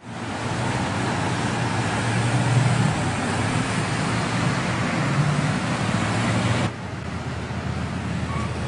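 Road traffic at an intersection: a steady wash of car engine and tyre noise. It drops suddenly to a lower level nearly seven seconds in.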